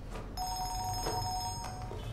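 Mobile phone ringing: a steady two-note ring tone that starts about a third of a second in and lasts roughly a second and a half.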